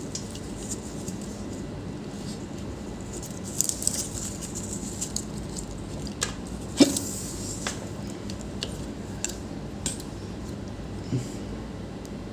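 Scattered light clicks and taps of a laptop motherboard, its charger cable and plug, and a small power-button board being handled on a work mat, the sharpest click about seven seconds in, over a faint steady hum.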